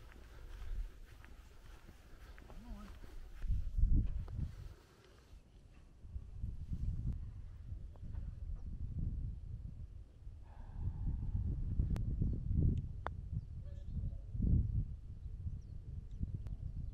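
Wind buffeting the microphone in uneven gusts, with a lull about five seconds in. Two sharp clicks come a few seconds before the end.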